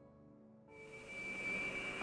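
Jet airliner engines on the runway: a steady high whine over a rushing noise that comes in about a second in and grows louder, after the last held notes of music fade out.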